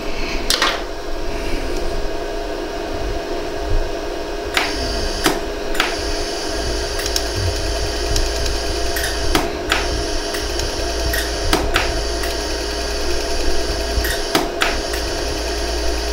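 LaserStar jewelry laser welder firing single pulses, each a sharp click, about ten in all and some in quick pairs, over the machine's steady hum. The pulses are melting the wire-filled repair on a hollow gold earring so it flows together as one piece.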